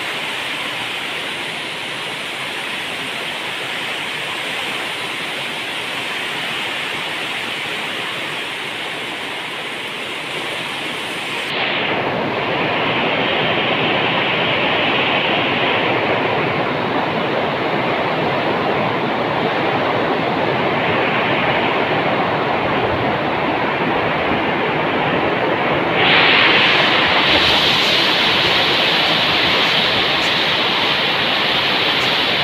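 Very heavy rain, a steady rushing downpour. It gets louder about twelve seconds in and again near the end.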